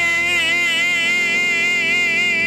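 A sustained organ chord held steady, its notes wavering gently in a slow, even vibrato.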